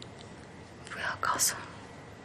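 A woman speaking in a weak whisper, a few breathy words about a second in, with a sharp hissed consonant near the middle.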